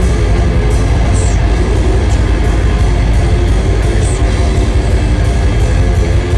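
Death metal band playing live at full volume: distorted electric guitar and bass over a fast drum kit with cymbal hits, a dense wall of sound with a heavy low end.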